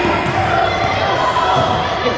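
A basketball being dribbled on a hardwood gym floor, with the general noise of a large gym around it: scattered knocks and background voices of players and spectators.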